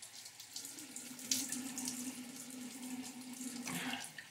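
Bathroom sink tap running in a steady stream, with a steady hum under it and short splashes as water is scooped up onto a face.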